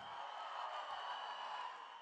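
Audience applauding, a steady even wash of clapping.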